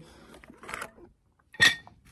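A single short metallic clink with a brief ring, about one and a half seconds in, metal knocking on metal.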